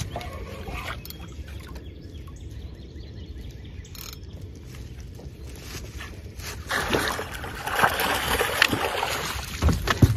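A hooked channel catfish splashing at the surface for two to three seconds, starting about seven seconds in, as it is scooped into a landing net; a dull thump near the end.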